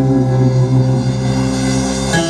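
Live country band playing an instrumental passage: fiddle and guitars holding long, steady notes.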